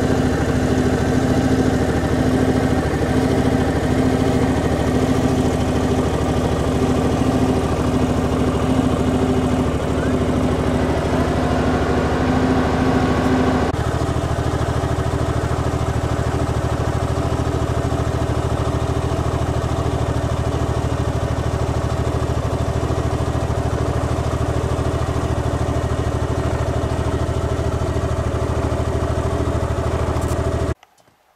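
An engine idling steadily, its hum shifting slightly about halfway through as one higher tone drops away.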